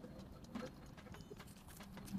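Faint, irregular clicks and mouth sounds of a man chewing roti and vegetables eaten by hand.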